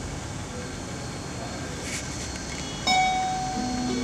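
Steady room hiss, then about three seconds in a guitar starts with a plucked note that rings on, followed by lower notes.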